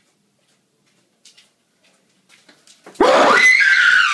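Near silence with a few faint sounds, then about three seconds in a woman lets out one sudden, loud, high scream of fright that dips slightly in pitch.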